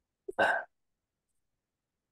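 A single short vocal burst from a person, such as a hiccup or cough, lasting under half a second and coming about a third of a second in.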